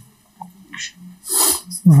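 A short pause with faint small noises, broken about one and a half seconds in by a short, sharp breathy sound, a quick breath, just before the voice resumes.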